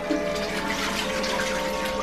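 Water running into a nearly full bathtub, a steady splashing rush, with music playing faintly underneath.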